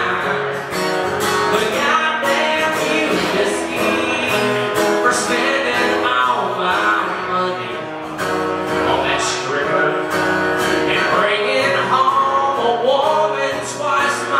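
A man singing while strumming a cutaway acoustic-electric guitar.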